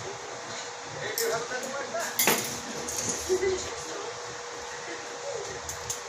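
Metal dental hand instruments clicking and clinking against orthodontic braces during an adjustment, with one sharp click a couple of seconds in, over a faint steady hum.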